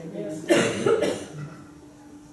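A man coughs close to a microphone about half a second in, with a short voiced tail; it is quieter afterwards.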